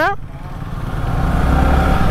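Yamaha R15 V3's single-cylinder engine running as the motorcycle rides along, with a low rumble that grows louder through the first second and a half.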